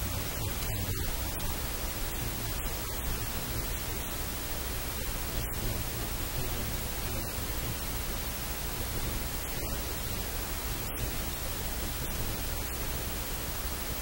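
Steady static-like hiss spread evenly from low to very high pitch, with no other distinct sounds.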